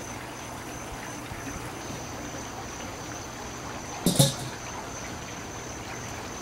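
Steady outdoor background hiss with a thin, steady high-pitched tone running through it, and one short sharp knock about four seconds in.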